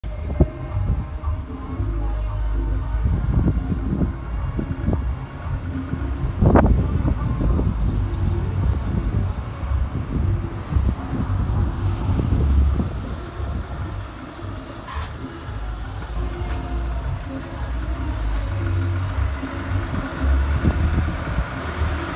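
Diesel engine of a Mack Granite dump truck running at low speed as the truck rolls slowly closer: a steady low rumble, with a short sharp burst about six and a half seconds in.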